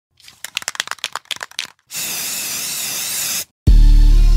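Edited intro sound effects: a quick run of sharp crackles, then a steady high hiss for about a second and a half. After a short gap, a loud, deep bass note of the intro music begins just before the end.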